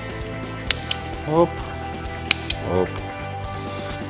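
Automatic wire stripper clamping and snapping on the ends of a two-core cable as the insulation is stripped: two pairs of sharp clicks about a second and a half apart.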